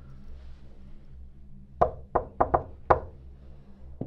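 Five quick knocks on a wooden door, starting about two seconds in and lasting about a second, in an uneven pattern.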